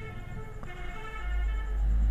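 A faint steady pitched tone with several overtones, fading out after about a second and a half, over a low rumble that grows louder toward the end.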